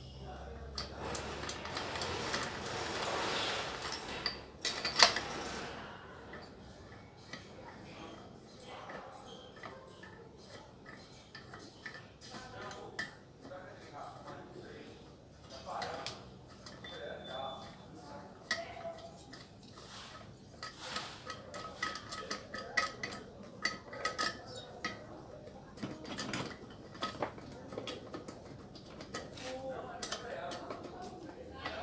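Metal clinks, taps and tool clatter as a Stihl MS 660 chainsaw's engine is taken apart by hand, with scattered small knocks throughout. One sharp metallic click about five seconds in is the loudest sound.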